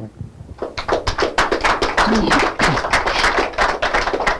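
An audience applauding: a dense patter of many hands clapping that starts about half a second in, with a few voices among it.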